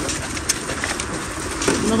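Steady running noise of a celery harvest rig in the field, with a sharp tap about half a second in. A man's voice starts near the end.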